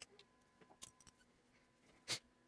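Near silence with a few faint, short clicks and taps, a cluster of them about a second in.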